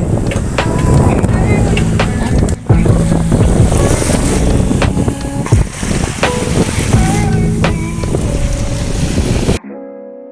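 Strong wind rumbling on the microphone over small waves washing onto a sandy beach, with faint short tones mixed in. It cuts off suddenly near the end.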